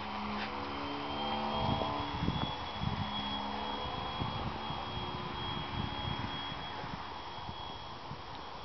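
Small electric RC model airplane's motor and propeller buzzing as it flies past, the pitch sliding a little lower and fading after about three seconds, with a thin high whine throughout. Irregular low thumps run under it from about a second and a half in.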